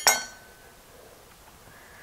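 A single sharp clink of a steel kitchen knife against a wooden cutting board, the blade ringing briefly before fading out.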